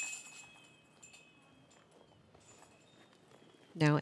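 Disc golf basket chains jingling as a putt strikes them, the metallic ringing fading away over about a second and a half.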